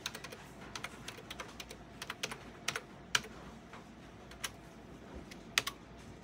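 Laptop keyboard being typed on in irregular runs of soft keystrokes, busiest in the first three seconds and thinning to a few scattered taps later.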